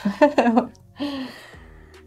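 Women laughing, with a few laughing words, then a soft breathy laugh about a second in that trails off.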